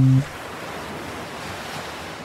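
A steady wash of ocean waves. A held music chord cuts off about a quarter second in.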